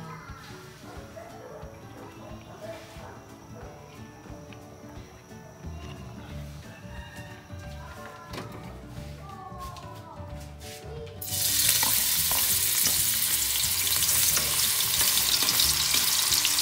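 After a quiet start, minced garlic goes into hot cooking oil in a wok about eleven seconds in and sizzles loudly and steadily while being stirred with a spatula.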